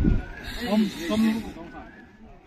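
A man's voice, speaking or laughing briefly, with low wind buffeting on the microphone at the start.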